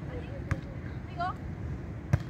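Open-air ambience with steady wind noise on the microphone and faint distant voices, and a single sharp tap about half a second in.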